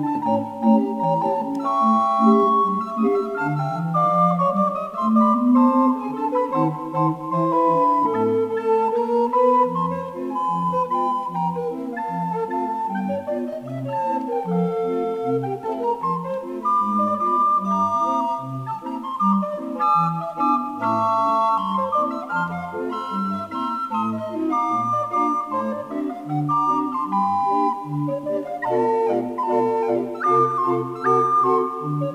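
A consort of recorders, from small high recorders down to large bass recorders, playing a ragtime piece in several parts: a melody and held chords over a bass line that moves in short, bouncing notes.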